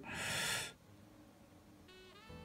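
A short breathy hiss, like an exhale, lasting under a second, then near quiet. A faint steady tone with overtones starts near the end.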